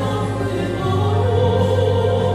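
A woman's solo singing voice holding long notes with a wide vibrato, a new long note starting about a second in, over a steady low accompaniment.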